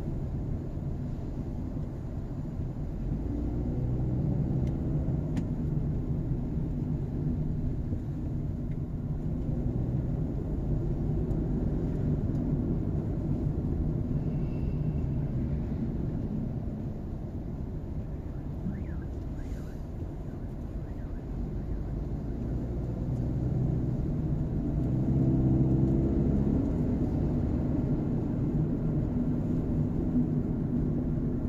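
Engine and tyre noise heard inside a car's cabin while it cruises on an expressway: a steady low rumble that swells about four seconds in and again near the end.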